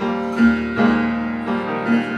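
Live piano accompaniment with upright bass playing sustained chords of a musical-theatre ballad, between sung lines.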